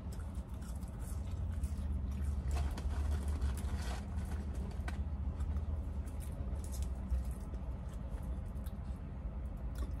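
Fries being eaten from a paper carton: faint rustling and small clicks of handling and chewing over a steady low rumble.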